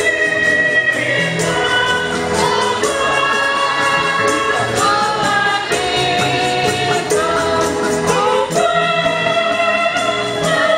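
A choir of women singing a church hymn together into microphones, holding long notes that step from one pitch to the next. A steady light beat runs underneath.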